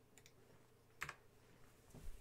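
Near silence with a few faint clicks, one sharper click about a second in, from computer controls being worked at a desk.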